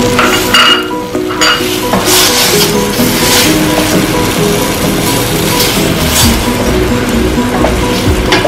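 Wooden spoon stirring and scraping chunks of pork and raw potato around a stainless steel pot in several strokes, with the food sizzling in the hot oil. Background music plays underneath.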